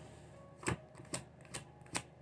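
Tarot card deck being shuffled by hand: four quiet, sharp clicks of the cards, evenly spaced a little under half a second apart.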